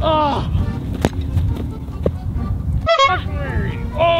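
Wind buffeting the microphone, with short falling vocal cries at the start and a single sharp thump about a second in.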